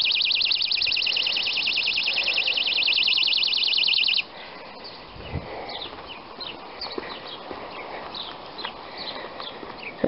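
Birdsong: a loud, high, rapid trill held on one pitch for about four seconds that stops suddenly, followed by faint scattered chirps. A single low thump comes about five seconds in.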